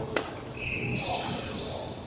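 A badminton racket strikes a shuttlecock once, a sharp crack just after the start in a reverberant wooden-floored hall, followed by a high squeak lasting under a second.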